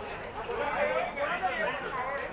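Several voices talking over one another at once: the chatter of a group of men.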